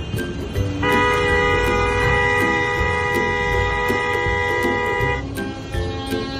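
A vehicle horn sounding one long, steady blast of several tones at once for about four seconds, starting about a second in, with shorter honks around it.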